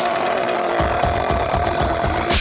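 Cartoon larva's long, shrill, rattling scream in fright, with low thuds underneath from about a second in.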